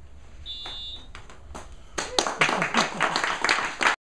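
A brief high electronic beep about half a second in, then a small group applauding, starting suddenly about two seconds in and going on loudly to the end.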